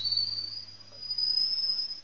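A thin, high-pitched whine that rises slightly in pitch and lasts about two seconds, over a faint steady low hum.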